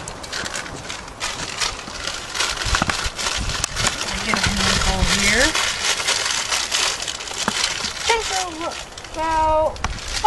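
Saltine crackers being crushed by hand into coarse chunks: a dense run of dry crunching and crackling, heaviest around the middle.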